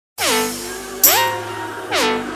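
Opening of a dubstep track: loud electronic lead notes with pitch slides. The first slides down, a second slides up about a second in, and a third slides down near the end.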